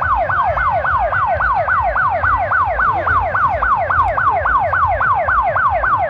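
Police van's electronic siren on a fast yelp: a falling wail repeated about four to five times a second, steady and loud.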